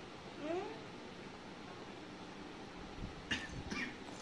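A short rising cat meow played through a phone speaker, one mew about half a second in. A few knocks and rustles of the phone or camera being handled come near the end.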